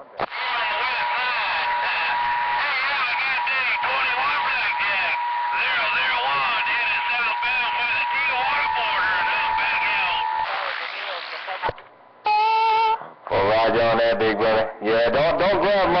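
CB radio receiver audio: voices garbled and overlapping under a steady whistle, the heterodyne of two stations transmitting at once. The whistle fades about 10 seconds in and the transmission cuts off about a second later. A short electronic beep follows, then a man's voice.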